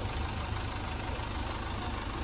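A steady low rumble with a hiss over it, beginning abruptly and holding even throughout.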